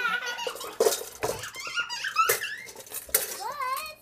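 Stainless steel mixing bowls clanking against each other and the floor as they are pulled out of a cabinet and set down, several separate knocks, with a young child's high squealing voice in between.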